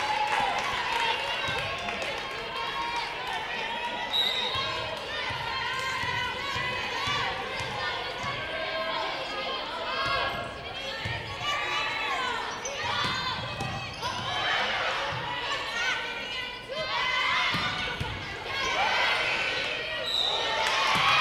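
Indoor volleyball play: the ball being served and struck, with players calling out and spectators talking.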